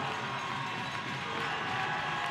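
Spectators in an indoor handball hall cheering and clapping, a steady crowd din.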